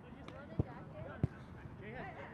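Two dull thumps about two-thirds of a second apart, over distant men's voices talking.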